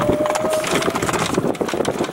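Dense, irregular crackling and rattling from a golf cart moving over rough ground.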